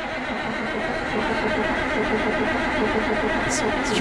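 Starter cranking the 1983 Peterbilt 362's Caterpillar diesel in a steady, even churn without the engine catching: a first start attempt after about 14 years parked.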